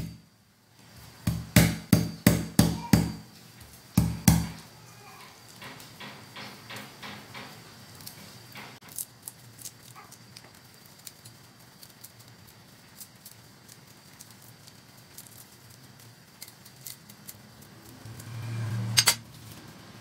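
Garlic cloves being hit open with the metal handle of a kitchen knife on a tabletop: a quick run of about seven knocks, then one more. After that comes faint crackling as the papery skins are peeled off the cloves by hand.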